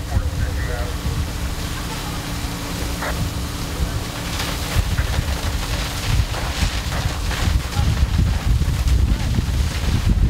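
Wind buffeting the microphone over the steady running of fire apparatus engines pumping water to an aerial ladder stream. A steady low hum in the drone fades out about six seconds in.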